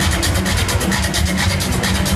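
Techno played loud over a large festival sound system, heard from within the crowd: a heavy, steady bass with fast, even hi-hat ticks.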